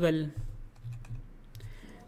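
A few soft clicks of computer controls, as the slide is scrolled, under a faint low hum.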